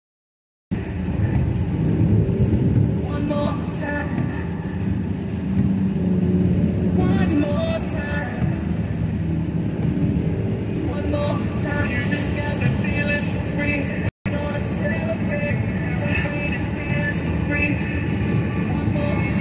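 Steady car cabin road noise while driving on a rain-soaked highway, a low rumble with tyre hiss, with a radio playing voices and music underneath. The audio cuts out completely at the start and again briefly about 14 seconds in.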